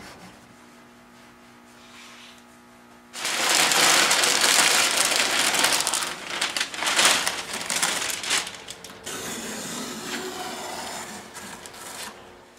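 Newspaper sheets rustling and crinkling loudly as they are handled and pulled away, starting about three seconds in and lasting some six seconds, then a softer rustle. Before it, only a faint steady hum.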